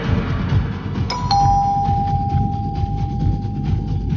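Background music with a low beat; about a second in, a two-note ding-dong doorbell chime sounds, a higher note then a lower one that rings on for about two seconds.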